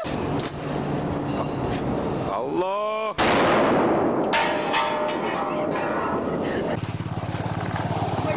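A shoulder-held tube launcher firing once about three seconds in: a brief wavering tone, then a sudden loud blast with a long noisy, echoing tail. Near the end, after a cut, a small engine runs steadily.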